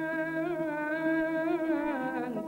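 Algerian hawzi ensemble of oud, violins and mandolin playing a long sustained melodic line that wavers and bends in pitch over a steady lower note.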